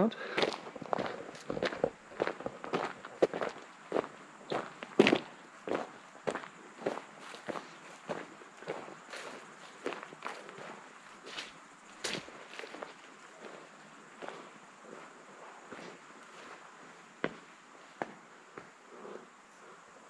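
Footsteps of a person walking on gravel and grass, about two steps a second, growing sparser and fainter in the second half.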